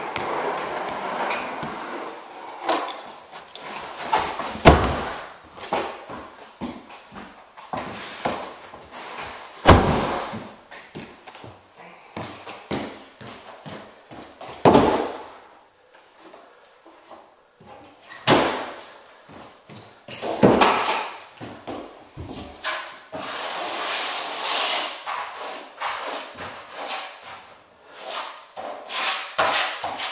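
Sheet vinyl flooring being unrolled and moved about on a bare subfloor: rubbing and scraping of the vinyl, with several loud thumps at irregular intervals as the roll is handled and set down.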